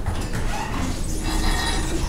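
Schindler hydraulic elevator's center-opening doors sliding open, a steady mechanical rumble on arrival at the top floor.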